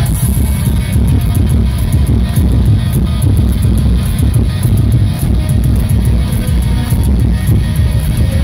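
Heavy metal band playing loud and live with guitars, bass and drums, the low end dominating the recording.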